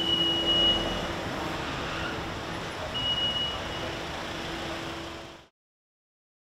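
Vehicle traffic outside an airport departures entrance: a steady engine hum over road noise, with two long high electronic beeps about three seconds apart. The sound fades out shortly before the end.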